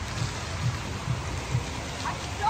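Fountain jets splashing steadily into a shallow pool, heard as an even, rain-like hiss, with low thumps about twice a second.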